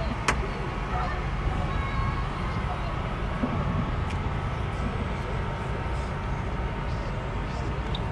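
Steady low rumble of outdoor background noise, with a single sharp click shortly after the start.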